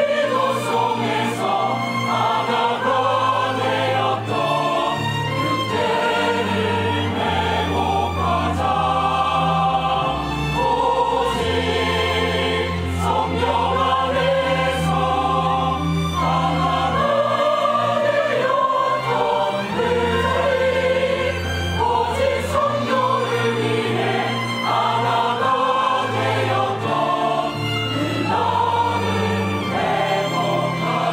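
Mixed church choir singing a hymn-style anthem in Korean, with instrumental accompaniment holding sustained bass notes beneath the voices.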